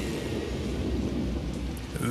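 Pause in the singing of a pop song's backing track: a low rumbling bass and a hissing, noisy wash carry on without voice, and the singing comes back right at the end.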